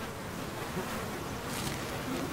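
A swarm of mosquitoes buzzing in a steady drone.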